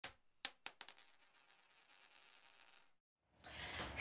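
A bright, high metallic chime effect over an intro title card: a loud ring at the start followed by several quick pings within the first second, dying away, then a fainter shimmer around two to three seconds in.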